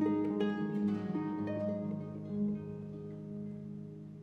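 Concert pedal harp playing a slow run of plucked notes that ring and die away, over long held low notes from a cello. The music grows quieter toward the end.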